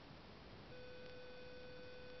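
A steady electronic beep tone, with overtones above it, starts about two-thirds of a second in and holds at one pitch over faint room hiss. A faint tick comes about a second in.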